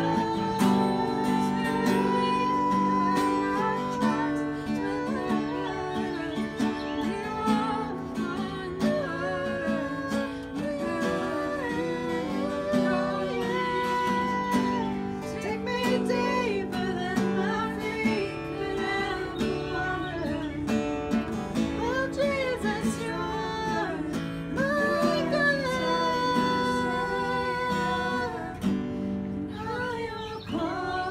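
A woman singing a melody while strumming chords on an acoustic guitar, the voice and guitar continuous throughout.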